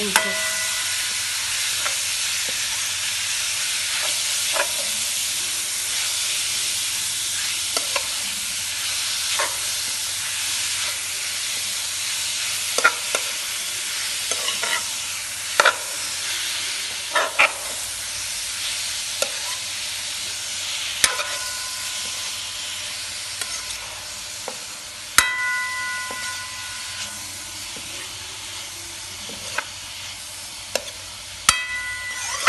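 Pork sizzling as it is stir-fried in a non-stick wok, with a spatula scraping and knocking against the pan now and then. A few of the knocks ring briefly. The sizzle slowly grows quieter over the half-minute.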